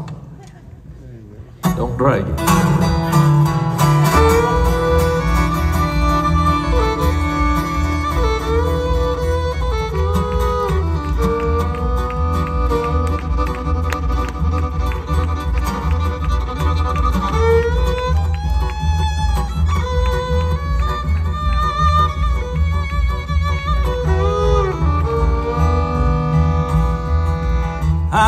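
Bluegrass band playing a fiddle-led instrumental introduction to a train song in E major, with upright bass keeping a steady two-beat pulse and acoustic guitar strumming. The music starts about two seconds in, after a brief hush.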